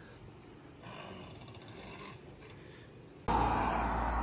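Faint outdoor hush, then about three seconds in a sudden jump to a louder low rumble of wind on the microphone mixed with road noise from a car on the road.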